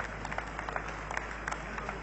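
Congregation applauding: a steady patter of many hand claps, fainter than the speech around it.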